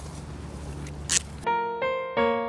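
Steady outdoor background noise with a brief rustle about a second in, then an abrupt switch to piano music, with single struck notes each ringing and fading before the next.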